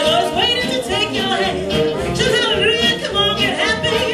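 Small hot jazz band playing live, with trumpet, saxophone, guitar, double bass and drums, and a melody line on top that bends and slides in pitch.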